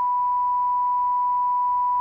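A steady, unwavering pure test tone, the line-up tone sent on the Assembly's plenary programme signal between repeats of the spoken ident.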